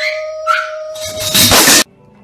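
A woman's voice holding a long, howl-like wailing note, then a loud harsh blast of noise, like a scream overloading the microphone, that cuts off abruptly near the end.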